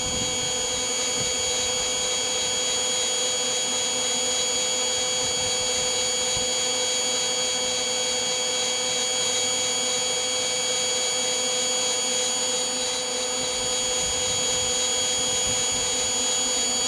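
Electric hot-air blower of a homemade roaster running steadily: a constant rushing with several steady whining tones over it.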